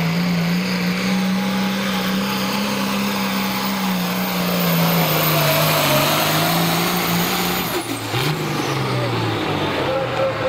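Turbocharged diesel engine of a Case IH Light Pro Stock pulling tractor running at full throttle under load while dragging the sled, its note high and steady. About eight seconds in the throttle comes off as the pull ends: the engine note drops and falls away, and a high whine winds down with it.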